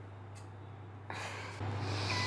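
A low steady hum, then about a second in a rushing breath noise close to a phone's microphone that grows louder.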